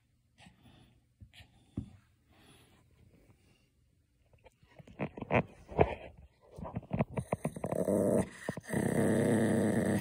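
Pomeranian growling while holding its rubber treat toy in its mouth, a warning growl of a dog guarding the toy. Mostly quiet at first, then short growls about five seconds in, building into a steady continuous growl over the last three seconds.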